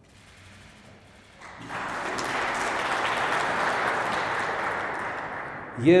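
Audience applauding, starting about a second and a half in and holding steady until a man's voice begins near the end.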